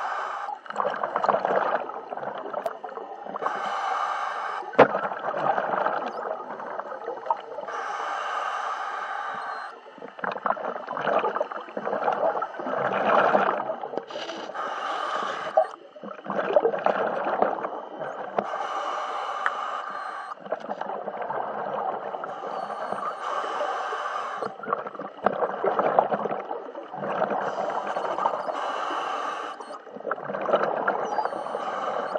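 A scuba diver breathing underwater through a regulator: a hissing inhale every four to five seconds, each followed by a longer spell of bubbling exhaled air.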